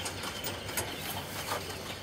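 A low, steady background with a few faint clicks and light rattles.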